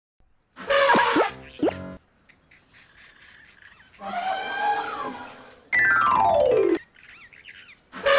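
Cartoon sound effects: a loud trumpet-like elephant call about a second in, another pitched effect halfway through, then a long falling whistle-like glide near the end.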